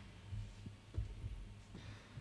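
Faint, irregular low thumps over a steady low hum, picked up through the hall's live microphone system.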